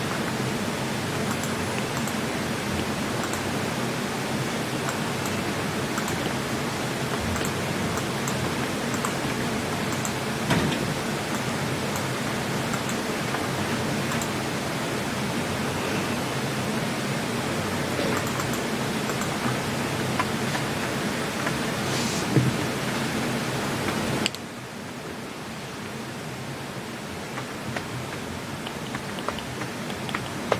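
Steady hiss of open studio microphones, with a few faint ticks; the hiss drops sharply in level about 24 seconds in.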